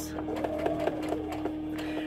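Baby Lock Soprano sewing machine running a few forward stitches through a piece of fabric, under background music.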